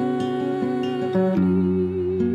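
Nylon-string classical guitar fingerpicked in a steady repeating pattern, with a voice humming a long held note over it; the guitar moves to a new chord a little over a second in.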